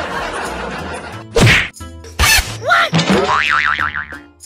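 Cartoon comedy sound effects: two loud whacks, the first about a second and a half in and the next just under a second later, then short rising-and-falling glides and a fast-wobbling boing near the end.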